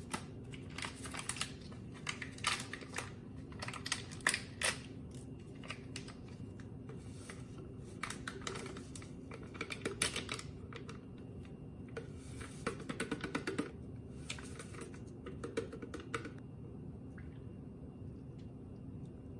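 Plastic stick packets crinkling and tearing as they are opened and shaken out into a plastic shaker bottle: rapid runs of small crackles and clicks that stop about sixteen seconds in.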